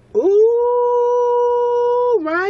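A man's voice drawing out a long sung "ooh": it slides up at the start, then holds one steady note, a howl-like exclamation of mock astonishment.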